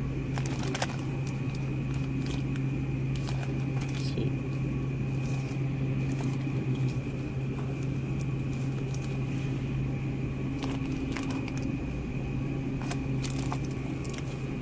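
Steady low electrical hum of a supermarket refrigerated display case, with a faint high tone over it. A few light clicks and crinkles come as plastic-wrapped cheese packs are handled.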